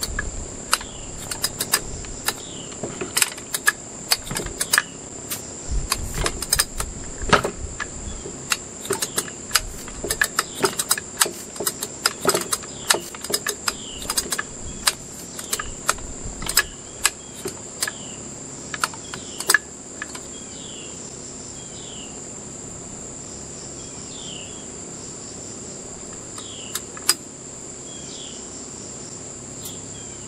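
Steady high trilling of crickets throughout. Over it, for about the first twenty seconds, irregular sharp clicks and knocks come from a compression gauge and a chainsaw engine being handled on a metal workbench during a compression test. After that the clicks stop, leaving the trill and a short chirp repeated about once a second.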